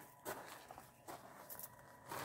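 Faint footsteps on gravel, a few soft steps, over a faint steady hum.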